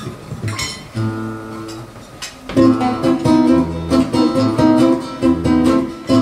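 Two nylon-string classical guitars playing a song's introduction. A single chord rings about a second in, and about halfway through a steady, rhythmic strummed accompaniment with regular bass notes begins.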